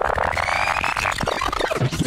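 Electronic soundtrack music: a buzzing, rapidly pulsing synth sweep that rises in pitch and then falls away near the end.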